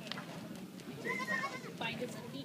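A young goat kid bleating once, a short high wavering call about a second in.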